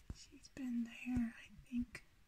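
Soft, hushed human speech, too quiet to make out as words, in three short phrases, with a couple of small knocks.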